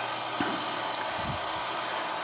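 Steady mechanical running hum and hiss of an HO-scale model diesel locomotive moving along the track, with a couple of faint clicks.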